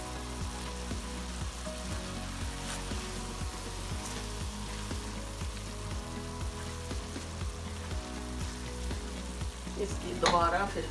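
Keema (minced meat) sizzling on a large iron tawa over a gas flame, a little added water boiling off in steam, while a spatula stirs it.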